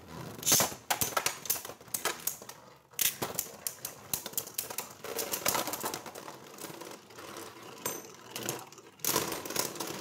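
Beyblade Burst spinning tops clattering in a plastic stadium: a dense, irregular run of clicks and rattles, with louder bursts about half a second in, around three and five seconds, and again near the end.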